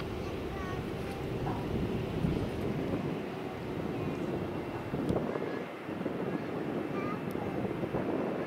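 Airbus A350-941 on final approach, its Rolls-Royce Trent XWB turbofans a steady distant rumble as it comes toward the camera, with wind gusting on the microphone.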